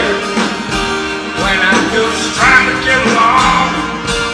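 Live band playing a soft-rock song, led by a strummed twelve-string acoustic guitar with an electric guitar, and a melody line bending up and down over it.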